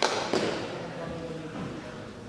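Two sharp thuds about a third of a second apart, echoing in a large sports hall, then quieter hall murmur.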